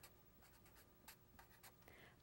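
Faint strokes of a Sharpie marker writing on paper: a few short, light scratches at irregular intervals.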